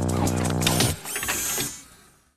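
Electronic sting sound effect: a low buzzing drone with fast clicking over it, which cuts off about a second in. A brief high, shimmering hiss follows and fades away.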